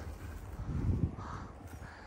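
Wind rumbling on a handheld phone microphone, swelling briefly about a second in.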